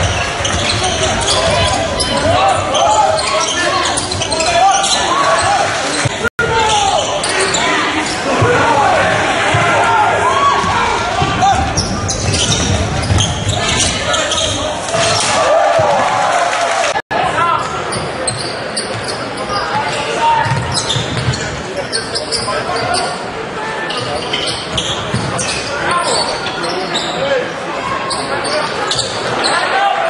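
Live basketball game sound in a large indoor hall: crowd voices and shouting, with a ball bouncing on the court. The sound cuts out for an instant twice, about six and seventeen seconds in.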